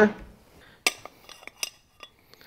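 A few light metallic clinks from the saw's steel arbor washer and blade-mounting parts being taken off and handled, the clearest just under a second in and again about a second later.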